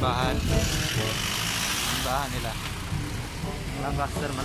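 A car passing on the road, a swelling hiss of tyres and engine that fades after about two seconds, with snatches of a man's voice.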